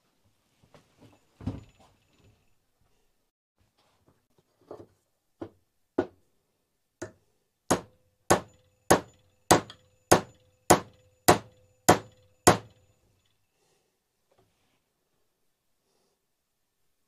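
Hammer tapping a small chainsaw part down into place. A few light, uneven taps lead into about nine sharp, evenly spaced strikes a little over half a second apart, with a faint metallic ring under them.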